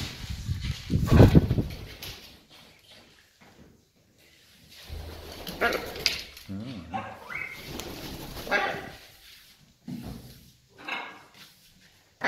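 Parrots making short calls and speech-like mutterings in several separate bursts, with a loud low burst about a second in.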